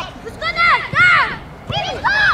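Children's high-pitched voices shouting to one another, about three short calls that rise and fall in pitch.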